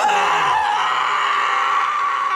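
A man's long, loud scream, held on one pitch, as he falls from a height.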